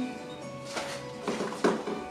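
Soft background music holding steady tones, broken by three short rustling swishes, about a second in and twice more near the end.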